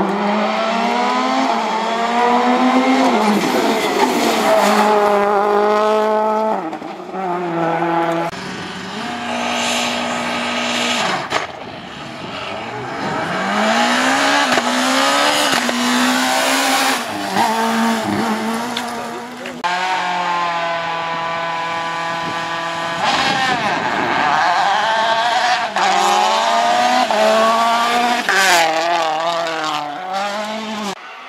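Rally cars passing one after another at full speed. The engines rev high, then drop sharply with each gear change and lift, and the sound cuts abruptly from one car to the next several times.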